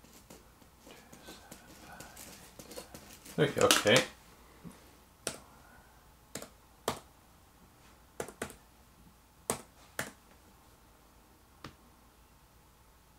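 Laptop keyboard keys pressed one at a time, about nine separate clicks spread over the second half, as a number is typed in. A short muttered vocal sound comes just before the typing starts, and there is faint rustling early on.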